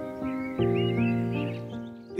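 Soft intro music of held chords, changing about halfway and fading near the end, with birds chirping over it.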